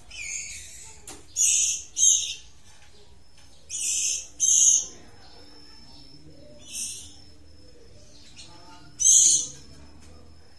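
White-rumped shamas calling: short, harsh, hissing calls, about seven in all, some in quick pairs.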